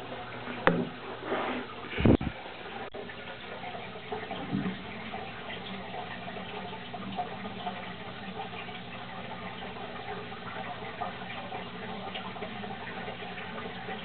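Water trickling steadily in a turtle aquarium, with a faint low hum under it. A few knocks come in the first two seconds, the loudest a thud about two seconds in.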